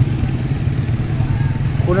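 Small motorcycle engine running steadily at low revs, a constant low rumble.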